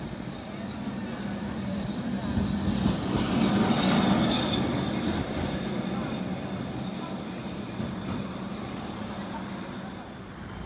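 Vintage Lisbon two-axle tram running past on street rails, its sound swelling to a peak about four seconds in and then fading, with a steady hum under the rolling noise.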